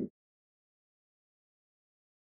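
Total silence, the sound track cut to nothing, after the last instant of a louder sound that stops abruptly just after the start.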